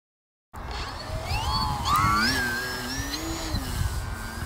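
Electric brushless motor and propeller of a FliteTest Bloody Baron foam RC plane whining up in pitch as the throttle opens for a hand launch, then holding a steady high whine as the plane climbs away. The sound cuts in about half a second in, over a low rumble.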